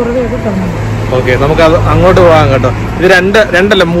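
A man talking over the steady low hum of a motor vehicle's engine, which stops about three seconds in.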